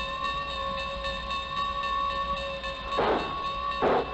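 Train sound effects played from a vinyl record: a train whistle held on one steady chord for nearly three seconds, then two slow exhaust chuffs near the end, about a second apart, as the locomotive starts to pull away.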